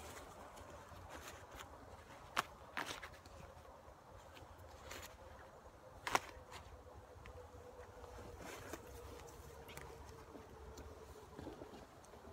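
Handling noises: a few sharp knocks and soft rustling as a white beekeeping jacket is picked up and shaken out with the phone in hand. The loudest knocks come about two and a half and six seconds in, and a faint steady hum runs through the second half.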